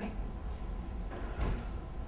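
A brief dull thump about a second and a half in, over a low steady hum.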